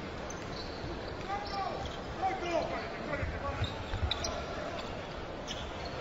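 Arena crowd noise with a basketball being dribbled on the court and a few faint shouts.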